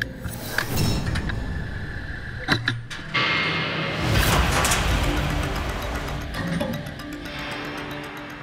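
Background music over the mechanical sounds of an injection-moulding machine opening its mould: a few sharp knocks early on, then a loud rushing hiss that peaks about four seconds in.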